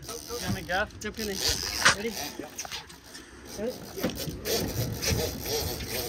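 Indistinct men's voices and short calls over a steady low rumble, with a few light knocks.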